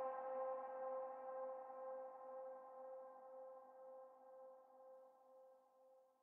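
The last sustained synthesizer note of a hardcore techno track, with the beat gone, ringing on alone and fading out slowly over about six seconds.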